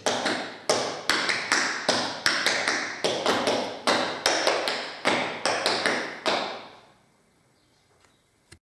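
Metal taps on tap shoes striking a hard tiled floor in a quick, rhythmic run of clicks, a sequence of drops and shuffle ball changes. The tapping stops about a second before the end.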